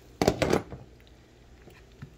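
Glass pot lid clattering onto a metal pot: a quick cluster of knocks lasting about half a second, near the start.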